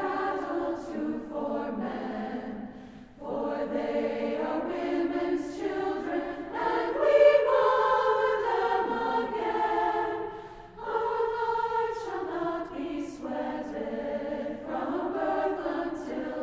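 Women's choir singing in phrases, with short breaks about three seconds in and near eleven seconds, swelling loudest about seven seconds in.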